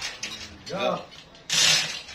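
Manual chain hoist being hauled by hand, its chain rattling and the pawl ratcheting in a burst with each pull as the log slab is lifted. The loudest burst starts about three-quarters of the way through.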